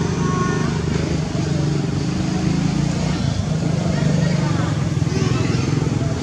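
Steady low rumble of a running engine, with faint indistinct voices.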